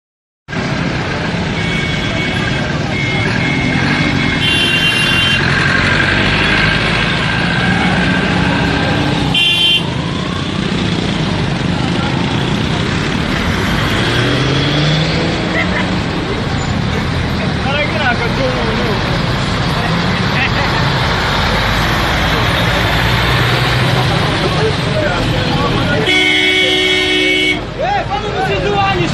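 Vehicle horns honking at a blocked road: several short honks in the first five seconds, one near ten seconds, and a longer, lower-pitched blast near the end. Underneath, the engines of the stopped trucks and cars run and voices call out.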